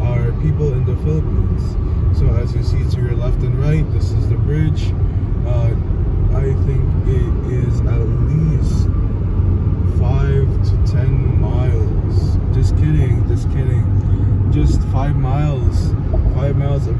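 Steady road and engine rumble inside a moving car's cabin at highway speed, with a person's voice talking over it.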